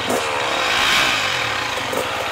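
Enduro dirt bike engine revving up and down, loudest about a second in.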